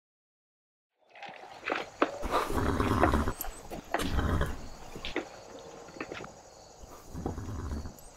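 After a second of silence, a horse making loud, noisy calls in bursts: a long one about two seconds in, a shorter one about four seconds in, and a weaker one near the end.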